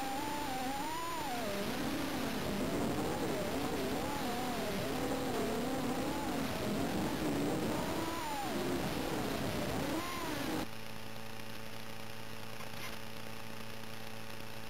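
Micro FPV quadcopter's motors whining in flight, the pitch constantly rising and falling with throttle. About ten seconds in it cuts off suddenly to a steady hum while the quad sits landed.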